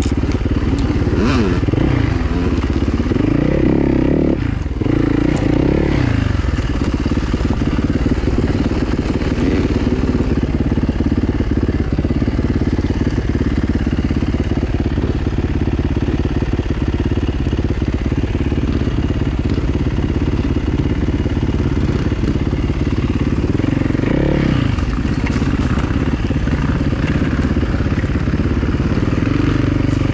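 Dirt bike engine running, revving up and down in the first few seconds and again about 24 seconds in, holding steadier in between.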